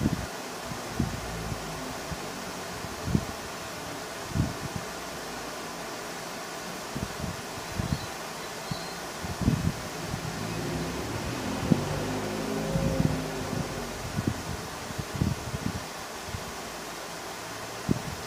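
Steady fan-like background noise, with scattered soft knocks and bumps from handling a hand mirror and mascara wand; a faint pitched murmur rises through the middle.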